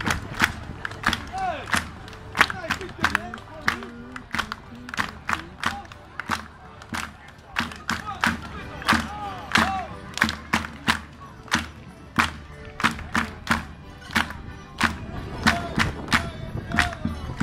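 Marching folk dancers keeping a steady beat with sharp hand percussion, about two to three strikes a second, with voices calling and singing over it.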